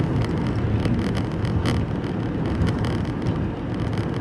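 Steady road and engine noise inside a moving car's cabin, a low rumble with a few faint knocks.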